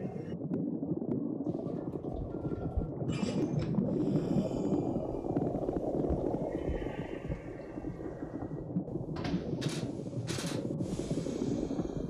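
Water rushing and gurgling with a low, churning rumble, broken by brief brighter hissy splashes about three seconds in and again around nine to eleven seconds in.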